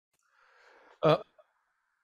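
A man's single brief hesitant 'uh', about a second in, after a faint soft noise.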